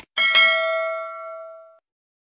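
Notification-bell 'ding' sound effect from a subscribe-button animation: a bright bell chime struck twice in quick succession, ringing and fading away over about a second and a half.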